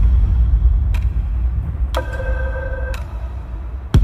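Film-trailer intro sound design: a deep boom that falls in pitch over a low rumbling drone, sharp ticks about once a second, and a held chord of tones in the middle. A second deep boom lands at the end.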